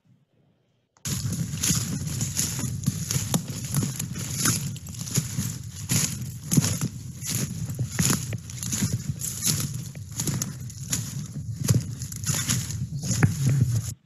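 Footsteps crunching and swishing through leafy woodland undergrowth, an irregular run of steps a few times a second, starting after about a second of silence.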